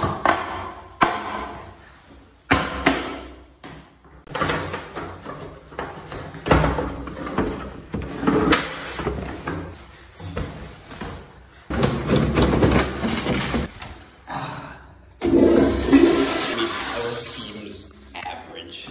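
Commercial flushometer toilet flushing: a loud rush of water swirling down the bowl, coming in several surges with short breaks between them.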